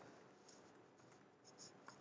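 Faint keystrokes on a computer keyboard: several soft, short clicks over near silence, most of them in the second half.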